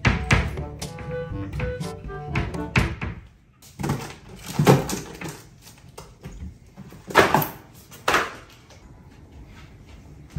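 Light background music for about the first three seconds, then a few sharp knocks and thumps of a small monkey clambering about wooden wardrobe shelves and knocking things down, the loudest about halfway and three quarters of the way through.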